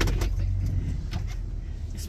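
Low, steady rumble of a minivan's idling engine heard inside the cabin, with a few light clicks near the start and about a second in.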